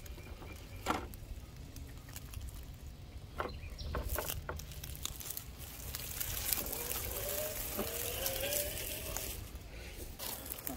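Radio-controlled scale crawler truck climbing over rocks, with scattered clicks and scrapes from its tyres on stone and dry leaves. An electric motor whine rises in pitch near the end.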